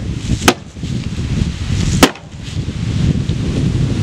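Two hammer blows striking a painted wooden bookshelf to knock it apart, sharp knocks about a second and a half apart.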